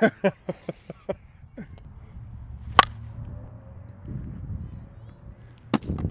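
A one-piece slowpitch softball bat striking a pitched ball: one sharp crack about three seconds in, with a second, fainter impact near the end and a low steady rumble underneath.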